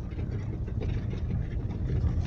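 Car interior sound of a car driving slowly: a steady low rumble of engine and tyres on a rough, uneven street, heard from inside the cabin.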